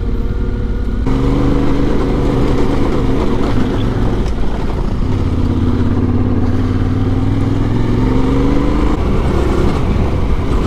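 Adventure motorcycle engine running at low trail speed on a dirt track, its pitch rising and falling with the throttle and climbing near the end.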